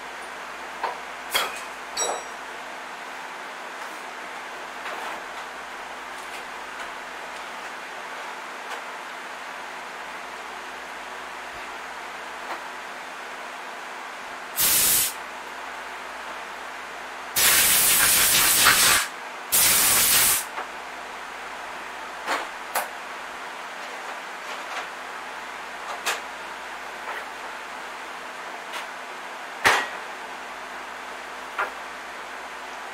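Three bursts of hissing from a pressurized nozzle about halfway through, the middle one the longest at about a second and a half. Scattered light clicks and taps come in between.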